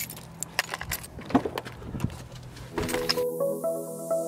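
A moving pickup truck with a low steady hum and many irregular sharp clicks and jingles. Electronic music starts about three seconds in.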